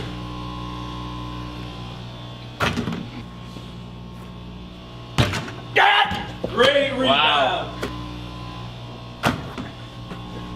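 Basketball knocking against a small wall-mounted hoop and bouncing, with sharp knocks a few seconds in, about halfway, and near the end. Between them comes a burst of shouting and laughter, all over a steady low hum.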